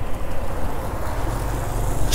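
Motorcycle engine running at low riding speed, with wind noise on the microphone; the low rumble swells a little past the middle.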